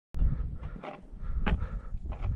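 Wind buffeting a phone's microphone in a low rumble, with two sharper crunches of footsteps in snow, just under a second and about a second and a half in.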